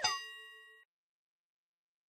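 A bell-like ding sound effect: a quick pitch glide that lands in a ringing chord of several tones, fading out within the first second.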